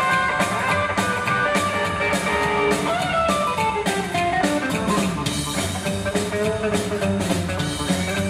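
Live rockabilly band: electric guitar playing a lead line over slapped upright bass and a standing drum kit, with no vocals.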